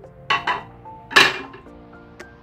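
Two short clatters of a metal spoon against a glass serving bowl about a second apart, the second louder, over soft background music.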